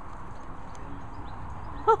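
Steady low background rumble with no distinct event, then a person breaks into quick, rhythmic laughter right at the end.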